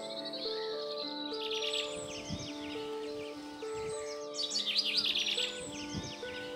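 A songbird singing two bursts of rapid, high chirping phrases, the first starting just over a second in and the second, louder, about four seconds in. Slow, sustained notes of background music play underneath.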